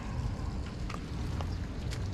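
Low, steady outdoor rumble with a few faint footsteps on wet asphalt, about half a second apart.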